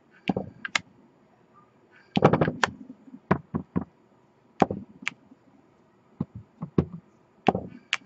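Clear acrylic stamp block tapped onto an ink pad and pressed onto cardstock on a table. A string of sharp taps and knocks, with a quick cluster about two seconds in and single taps after it.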